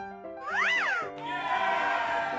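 Bright children's background music with a short cartoon sound effect that glides up and back down in pitch, like a meow. It is followed by a cheer-like celebration effect lasting over a second, the reward jingle for a puzzle piece fitting correctly.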